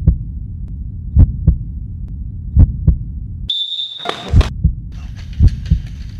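Heartbeat sound effect over a low hum: paired low thumps, lub-dub, about every second and a half. About three and a half seconds in, the hum cuts out for a short, shrill whistle blast, then the beat carries on under a faint hiss.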